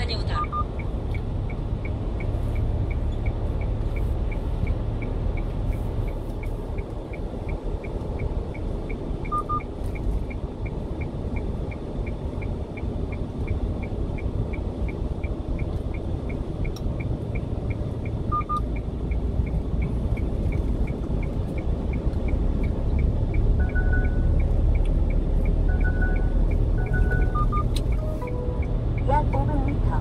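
Steady engine and tyre rumble inside the cab of a 1-ton refrigerated box truck on the move, growing fuller in the low end later on. A faint tick repeats about twice a second, and a few short electronic beeps sound now and then.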